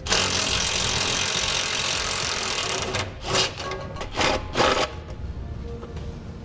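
An impact wrench runs in one long burst of about three seconds, then in three short bursts, backing out the 13 mm bolts that hold a pickup's exhaust heat shield.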